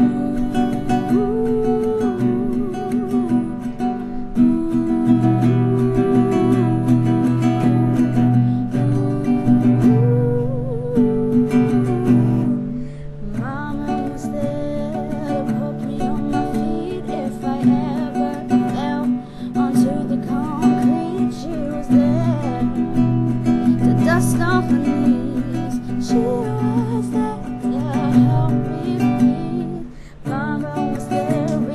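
A girl singing while playing chords on an acoustic guitar, with a brief break in the playing near the middle.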